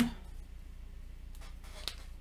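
Quiet handling of board-game cards and pieces on a table, with a light click near the end, over a steady low electrical hum.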